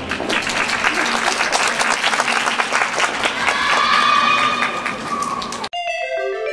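Audience applause greeting the end of a rhythmic gymnastics routine, with a few voices calling out in the later part. About five and a half seconds in, the applause cuts off abruptly and bright marimba-like music begins.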